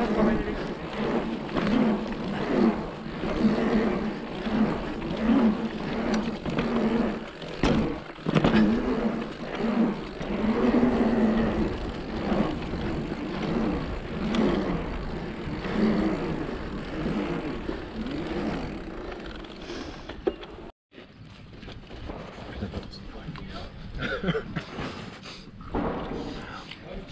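Electric mountain bike rolling over an asphalt pump track: tyre and drive noise whose pitch rises and falls about once a second as the bike pumps through the rollers. It cuts off suddenly about 20 seconds in.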